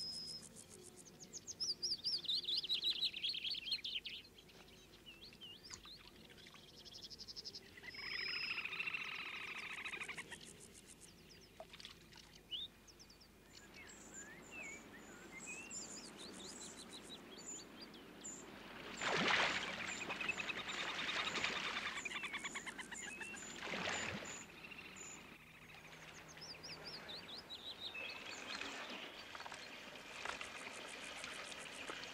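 Wild birds calling at the waterside: series of chirps and short falling whistles, with high, fast trills coming and going and a louder run of calls a little past the middle.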